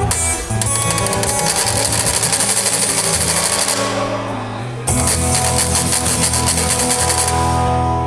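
Live acoustic guitar music with a fast, scratchy percussion rhythm over it. The scratchy rhythm drops out for about a second midway, then comes back before falling away near the end.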